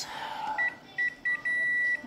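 Photocopier touchscreen key beeps as the arrow button is pressed: three short beeps, then one longer beep near the end.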